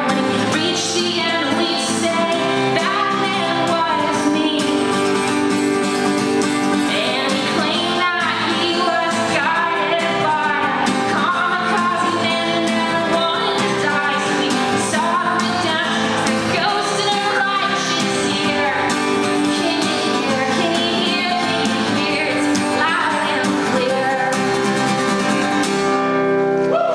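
A woman singing a song live, accompanying herself on an acoustic guitar, strummed steadily under the voice.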